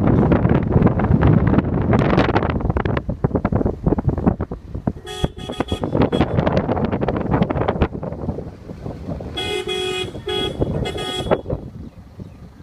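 A vehicle horn honks: one short toot about five seconds in, then three blasts close together between about nine and eleven seconds. Under the horn, and loudest in the first half, wind buffets the microphone.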